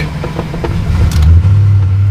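Early Ford Bronco engine being cranked over, a steady low drone that gets louder about a second in. It does not catch, which the owner puts down to a flooded engine.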